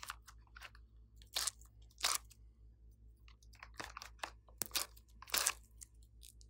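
Soft clay strips being pulled out of a silicone mold and pressed onto a bowl of slime, with about four short, sharp handling sounds and several fainter ones in between.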